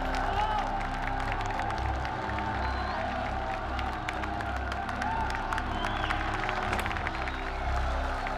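Film soundtrack: music with a pulsing low beat mixed under a large arena crowd clapping and cheering.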